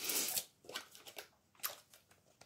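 Rustling of a plastic-wrapped Scentsy wax bar being taken out and handled: a short rustle at the start, then a few faint clicks of the plastic packaging.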